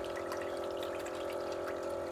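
Julabo ED immersion circulator running, its circulation pump humming steadily as it stirs the water in the bath.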